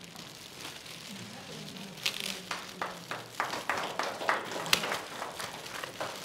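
Metallic foil gift wrap crinkling and rustling as it is pulled off a framed poster: a run of irregular sharp crackles starting about two seconds in.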